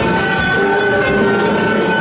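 Large mixed ensemble of winds, brass, strings, electric guitars and drums improvising a loud, dense mass of sound, with several long held notes, one high note sustained throughout, over busy drumming.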